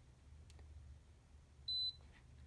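A single short, high-pitched beep from the Feniex 4200 Mini light controller near the end, as its buttons are pressed to switch on the wigwag pattern. A faint click comes about a quarter of the way in.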